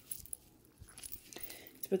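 Faint light clinks and rustles of a planner band with a dangling charm and tassel clip being handled. A woman's voice begins near the end.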